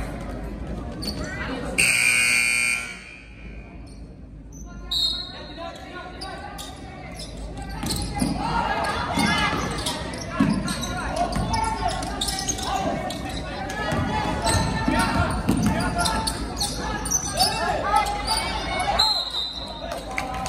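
Basketball game sounds in a large gym. A loud gym buzzer sounds for about a second, two seconds in. Later a basketball bounces on the hardwood among voices, and a referee's whistle gives two short blasts, one near the start of play and one near the end.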